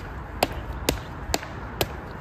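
Sharp knocks repeating in a steady rhythm, about two a second, over a low background rumble.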